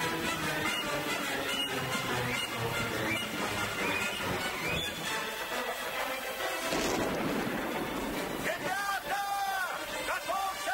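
Film battle soundtrack: orchestral score mixed with men shouting, a loud rush of noise about seven seconds in from a musket volley, then long drawn-out shouts near the end.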